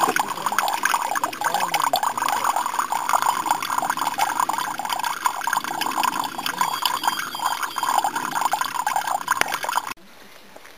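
Mineral spring water pouring from a small metal spout into a shallow pool, splashing steadily.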